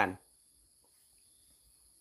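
Faint, steady, high-pitched chirring of insects in the background, a continuous thin tone with a higher one above it, heard in a pause after a man's voice stops at the very start.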